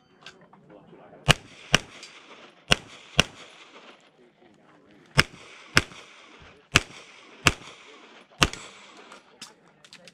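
Handgun shots fired rapidly in a practical shooting stage: nine sharp cracks, mostly in pairs about half a second apart, two hits per target, then a couple of fainter cracks near the end.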